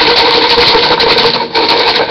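Folded paper question slips rattling in a plastic cup that is shaken hard close to the microphone: a loud, rapid, continuous rattle with a brief break about a second and a half in.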